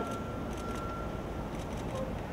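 Urban street background noise: a steady low rumble of vehicles, with a thin steady high tone that stops near the end and a few faint clicks.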